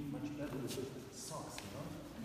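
Speech only: indistinct voices talking in a large room.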